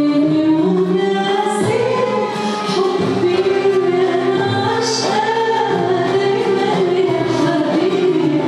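A woman sings an Arabic song live into a microphone over an accompanying ensemble, with long held notes that bend in pitch.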